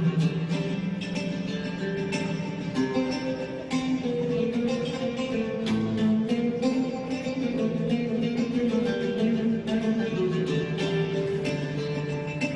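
An oud and two acoustic guitars playing an instrumental piece live, a steady run of plucked notes.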